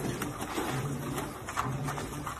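Seal pup calling: a low, drawn-out call, heard twice about a second apart.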